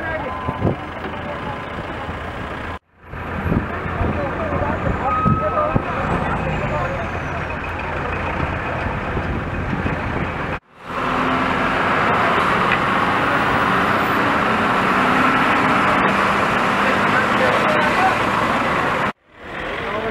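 Roadside traffic sound of motor vehicle engines mixed with people talking, broken by two abrupt cuts; after the second cut it becomes a steadier, louder engine noise.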